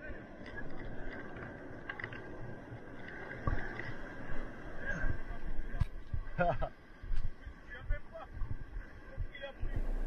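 Surf washing through the shallows and around a surfboard as it is pushed out through the whitewash, with scattered splashes and knocks.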